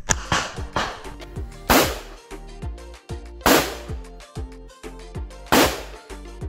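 Four loud pistol shots, sharp cracks just under two seconds apart, over background music with a steady beat.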